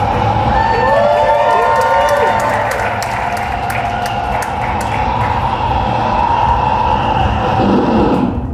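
A theatre audience cheering and clapping, with a few whoops about one to two seconds in and a run of quick hand claps after.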